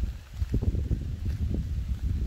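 Wind buffeting the microphone outdoors, an uneven low rumble that dips briefly near the start.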